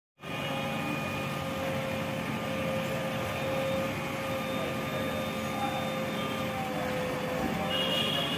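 JCB 3DX backhoe loader's diesel engine running steadily under load as the backhoe arm lifts garbage, with several steady whining tones over the engine noise.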